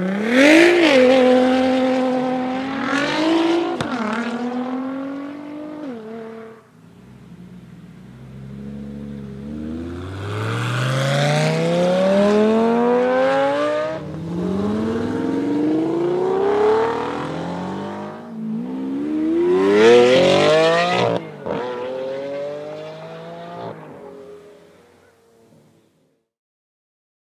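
High-performance cars accelerating hard away, one after another: a Nissan GT-R's twin-turbo V6 pulls off, then a Lamborghini's V12 revs up through several gears, its pitch climbing in repeated rises. The loudest rise comes about three-quarters of the way through, then the engine sound falls away and fades out.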